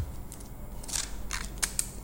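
A handful of short, light clicks and taps as a smartphone is handled and turned over in the hands.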